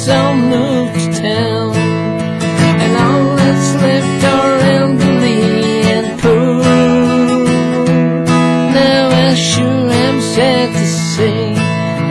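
Acoustic guitar strummed steadily through an instrumental break in a country song, with a wavering, sustained melody line carried over the chords.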